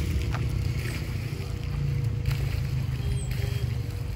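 Outdoor town ambience: a steady low rumble, with a faint steady hum and scattered short, faint high clicks and chirps.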